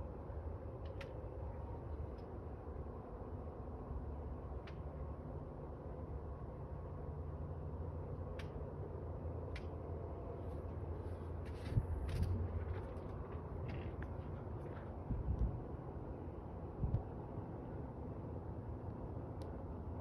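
Quiet outdoor evening ambience: a steady low hum with a few faint clicks, and a couple of brief soft bumps about midway, typical of a handheld phone. No engine or aircraft sound comes from the moving light.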